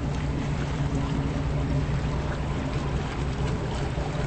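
Boat engine running steadily at low speed: a low, even droning hum under a wash of noise.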